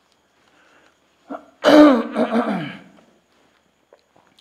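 A man clearing his throat close to the microphone: a brief catch a little over a second in, then one louder, voiced clearing of about a second.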